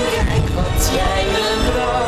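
Musical-theatre singing with vibrato over orchestral backing music, with a low rumble underneath through most of it.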